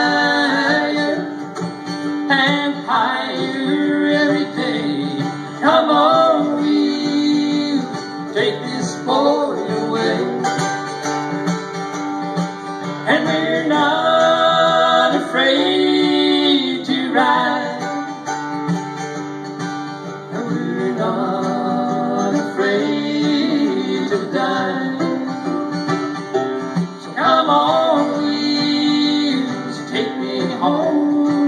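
Mandolin and acoustic guitar played together in a live country-rock song, with singing over them at times.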